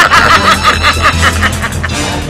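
Several people laughing hard together in rapid, rhythmic bursts, over a steady low drone.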